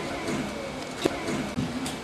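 Faint, indistinct voices and room noise, with a sharp click about halfway through and a smaller one near the end.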